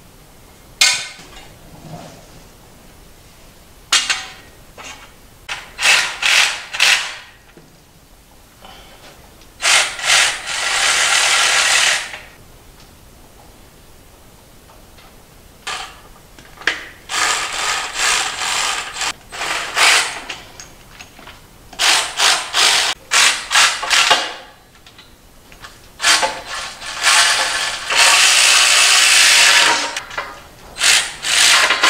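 Ratchet wrench clicking in repeated bursts, each a second to a few seconds long with short pauses between, as bolts are tightened into T-nuts on the aluminium extrusion frame.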